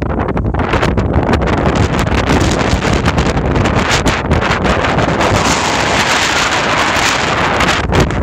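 Wind buffeting the microphone: a loud, gusty rushing noise throughout.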